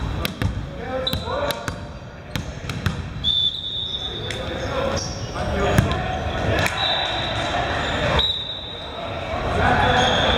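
Voices in a large, echoing gym between volleyball rallies, with a string of sharp knocks from a ball bouncing on the hardwood court.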